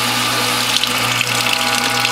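Norwalk juicer's electric motor and hydraulic press running with a steady hum while pressing a cloth-wrapped orange. From about a second in, a stream of orange juice splashes into a glass measuring jug below.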